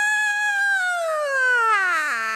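A woman's long, high wail, held on one pitch and then sliding steadily down in pitch toward the end, a cry of distress during prayer ministry.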